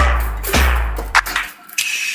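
A music beat: a deep bass with sharp drum hits about half a second apart, cutting out about a second and a half in. A thin high tone begins near the end.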